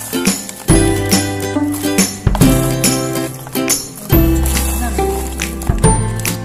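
Instrumental background music: a low bass note that changes about every one and a half to two seconds under short, bright melody notes.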